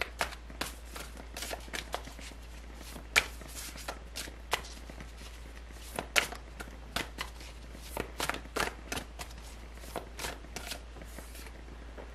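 A tarot deck being shuffled by hand: irregular sharp snaps and flicks of cards slapping together, a few a second.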